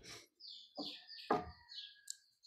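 Faint bird chirping: a quick series of short, high chirps, with a couple of soft clicks or knocks near the middle.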